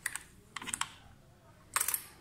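Motorcycle ignition key clicking and rattling in the ignition lock: three short bursts of clicks. The last burst, near the end, is the loudest.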